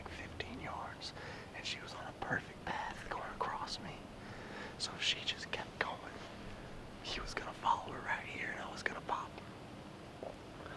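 A man whispering, in short hushed phrases with hissing consonants.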